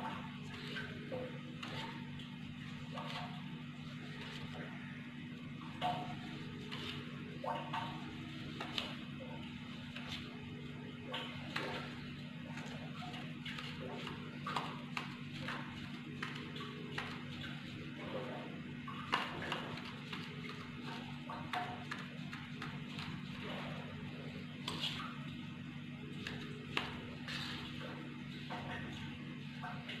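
A knife slicing down through packed kinetic sand: irregular, crisp cutting crunches with sharp taps, over a steady low hum.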